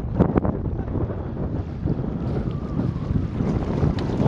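Wind buffeting the microphone: a steady low rumble, with a few short knocks about a quarter of a second in.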